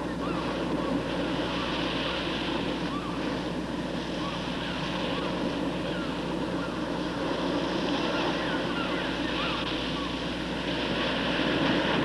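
Steady rushing outdoor wind with a constant low hum beneath it.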